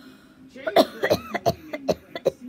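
A woman coughing several times with voice in the coughs, after a quieter start.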